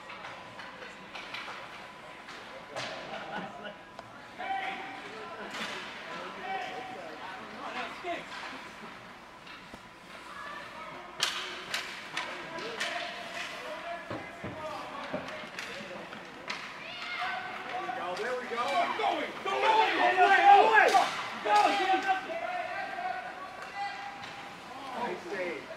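Rink sounds of an ice hockey game: sharp knocks of sticks and puck, some against the boards, over spectators' voices that rise to loud shouting about twenty seconds in.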